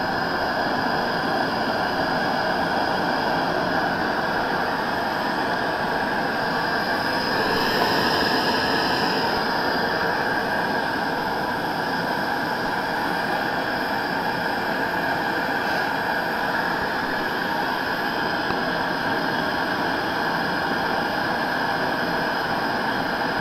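Mini propane-butane canister stove burning at high flame: a steady roar from the burner, swelling slightly about eight seconds in, with a pot of water heating close to a rolling boil on it.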